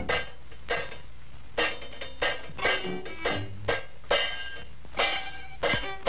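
Instrumental passage of a 1928 jazz quintet recording: short, sharply struck chords in an uneven, syncopated rhythm.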